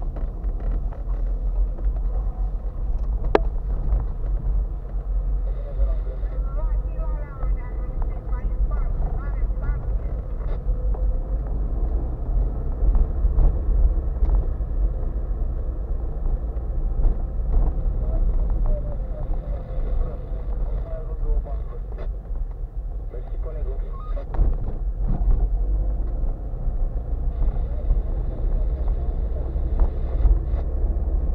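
Car interior noise while driving slowly over a rough concrete road: a steady low rumble from the engine and tyres, with occasional knocks and a sharp click about three seconds in.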